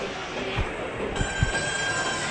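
Busy indoor crowd hubbub. About a second in, a steady high-pitched squeal starts and holds. Three low thumps fall in the first second and a half.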